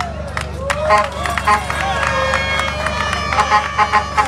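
Rally crowd cheering and shouting in a pause of the speech, with scattered claps and, from about a second in, several horns blowing steady held notes together.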